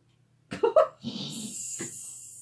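A woman's short pained whimpers, then a long hiss of breath through clenched teeth: a wince of sympathy.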